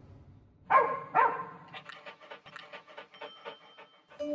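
A small dog barking twice, two short yaps half a second apart, then panting in quick breaths, about five a second.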